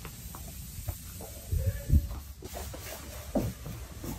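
Footsteps and handling noise over a low steady rumble, with a few dull thumps near the middle.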